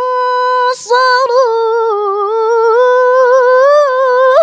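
A woman's voice reciting the Qur'an in melodic tilawah style, unaccompanied, holding long ornamented high notes. There is a quick intake of breath about a second in.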